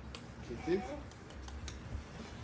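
A short spoken "Kiss?" over faint, scattered clicks and a low steady hum.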